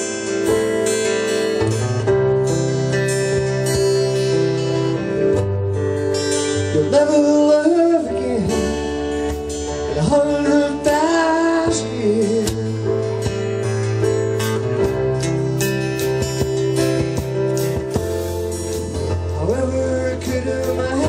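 A live band playing a slow song: two acoustic guitars strummed, with keyboard and a man singing the lead vocal.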